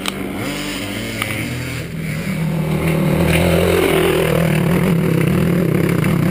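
Enduro dirt bike engine running under throttle as it climbs a rocky trail, getting steadily louder from about halfway through.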